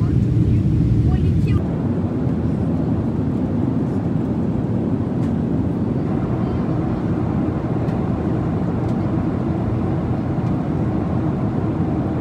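Steady cabin noise of a jet airliner in flight: a continuous engine and airflow rumble, heaviest in the low end. About one and a half seconds in it cuts to a slightly quieter, thinner steady rumble.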